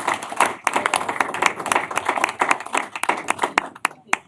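Applause from a roomful of people, clapping that thins out to a few last scattered claps near the end.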